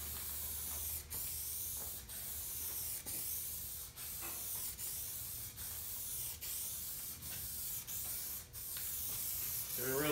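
Aerosol can of guide coat hissing as it is sprayed in sweeping passes over a primed steel tailgate, the hiss breaking off briefly about once a second between passes. The light dark dusting marks the primer so that block sanding will show up low spots.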